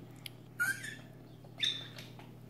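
A toddler gives two short, high-pitched squeals about a second apart, over a faint steady low hum.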